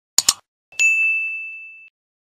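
Subscribe-button animation sound effects: a quick mouse double-click, then a single bright bell ding for the notification bell that rings out and fades over about a second.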